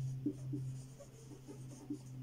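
Whiteboard marker writing on a whiteboard: short scratching and squeaking strokes, several a second, as words are written. A steady low hum runs underneath.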